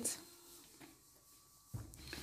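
Mostly quiet: faint handling of couscous grains being rubbed with oil by hand in a stainless-steel bowl, with a dull low bump near the end.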